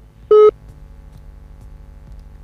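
A single short electronic beep, about a quarter of a second long, shortly after the start, followed by a low steady hum.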